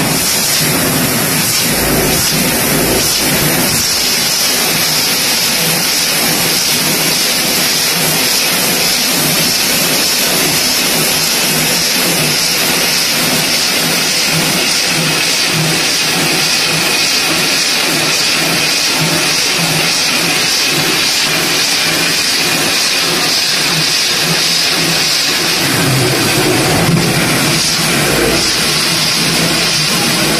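BOPP tape slitting and rewinding machine running at speed: a loud, steady hiss of film running over the rollers and winding onto the rolls, with an even pulsing underneath.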